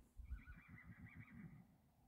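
A wild stallion whinnying faintly: one call of about a second and a half with a wavering, quavering pitch.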